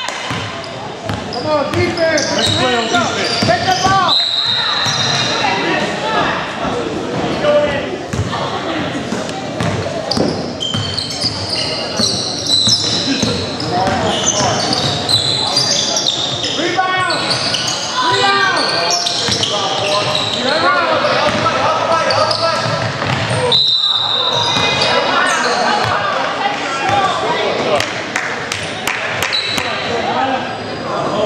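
Basketball game in a gym: the ball being dribbled and bouncing on the hardwood court, with players and spectators shouting and calling out, echoing in the large hall.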